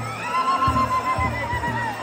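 Traditional Nepali festival band music: drums beating repeatedly under a long, wavering, high-pitched wind-instrument melody.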